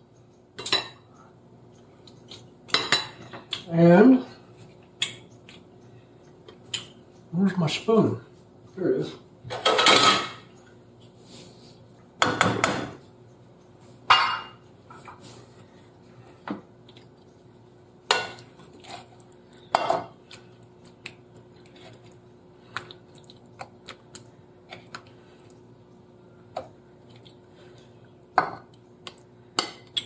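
Utensils clinking, knocking and scraping against a frying pan and glass plates as noodles and stir-fry are served. The clinks are scattered, with a few louder scrapes among them.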